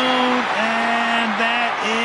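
A TV commentator's drawn-out excited call of a touchdown, the voice held on long level notes in several stretched syllables, over a cheering stadium crowd.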